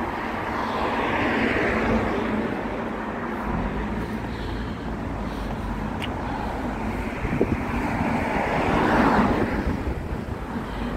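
Cars passing on a village road: the noise of tyres and engines swells as one car goes by about a second in, and again as another goes by near the end.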